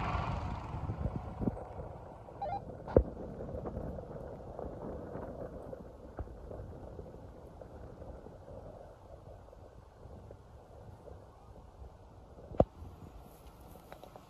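Off-road trucks heard at a distance as they climb a dirt trail: a low engine rumble that gradually fades. Two sharp clicks stand out, about three seconds in and again near the end.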